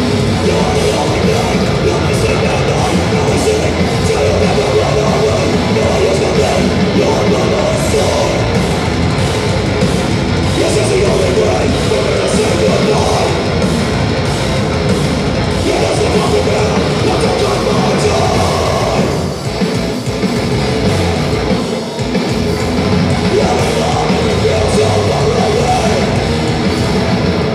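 Metalcore band playing live through a large PA: heavy distorted guitars and pounding drums, with two short breaks in the music near the end.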